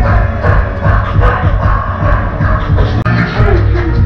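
Loud club music with a heavy bass beat played over a nightclub sound system.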